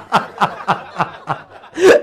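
A man's hard, breathless laughter: a run of short breathy bursts, about three a second, with a louder burst near the end.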